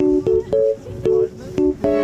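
Background music: a melody of short, separate notes, several a second.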